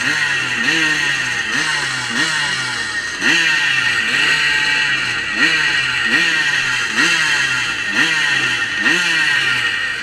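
125cc twinshock two-stroke motocross bikes revving while waiting to start. The throttles are blipped over and over, each blip a quick rising rev about every two-thirds of a second, over the steady high buzz of several engines together.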